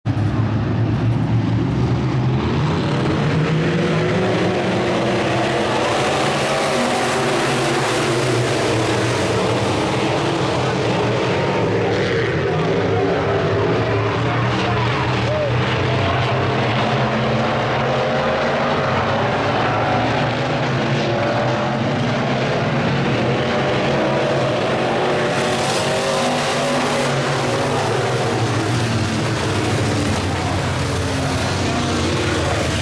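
A pack of dirt-track sport modified race cars' V8 engines running at racing speed, a continuous loud engine noise whose pitch keeps rising and falling as the cars accelerate and lift around the oval.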